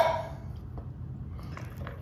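A metal spoon clinks against a tin can at the start, its short ring dying away, followed by quiet scraping and handling of the cans with a few faint ticks near the end.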